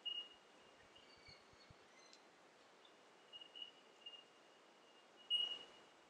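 Quiet outdoor background: a faint hiss with a thin, high-pitched tone that comes and goes, and a short soft swell of hiss near the end.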